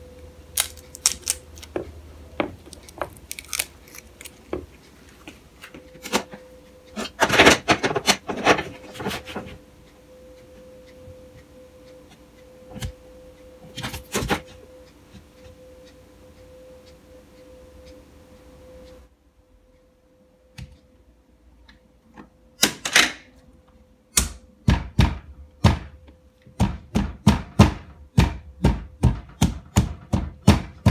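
Handling noise of an iPad being fitted in a wooden frame and fixed to a wall: scattered clicks, taps and knocks, with a denser rustling cluster partway through. Near the end comes a run of evenly spaced clicks, two or three a second, over a faint steady hum.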